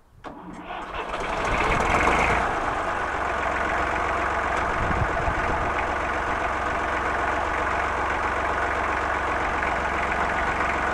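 Fordson Dexta tractor engine being started: it catches almost at once, revs up briefly, then settles to a steady idle.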